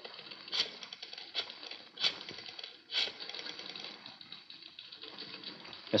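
Telephone rotary dial being dialed: a run of clicking rattles, with a sharp click about once a second, placing a new call.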